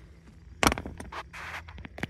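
Handling noise: a sharp click about two-thirds of a second in, then a few lighter clicks and a brief scrape, as parts and wiring of a steering column are worked by hand.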